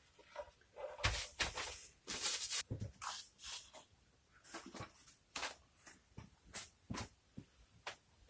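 Irregular rustles, light knocks and scrapes of workbench handling: a guitar body and a mixing board being set down on a paper-covered bench. Near the end comes the scrape of a spreader working body filler on the board.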